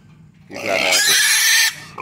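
Young pig squealing loudly: one long call starting about half a second in, and another beginning right at the end. These are the distress calls of a pig separated from its pen mates.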